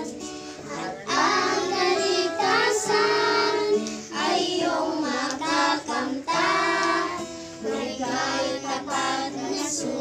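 A group of young children singing a Filipino Sunday-school song together in unison, in phrases with short breaths between them.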